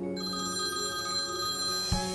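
A phone ringing: a high electronic ring that starts just after the beginning, over soft background music, with a click near the end.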